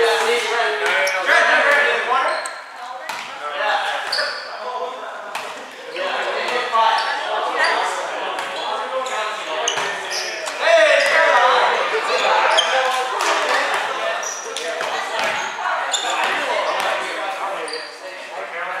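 Indoor volleyball in a gymnasium: the ball is struck and bounced again and again with sharp, echoing smacks, among players' shouting voices, all with the reverberation of a large hall.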